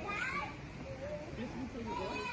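Children's voices in the background, several kids talking and calling out at once.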